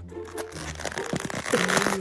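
Background music with steady low bass notes. Over it come crinkling and rustling as a styrofoam takeout box is pried open over crumpled aluminium foil, growing louder near the end.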